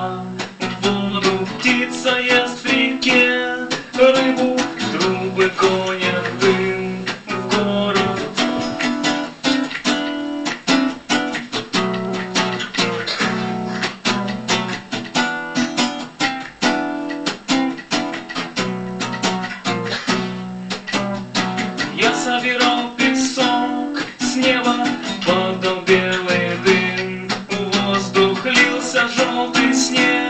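Acoustic guitar strummed steadily in a song, with a man singing over it.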